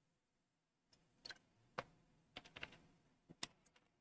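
Near silence broken by a handful of faint, short clicks and taps, starting about a second in.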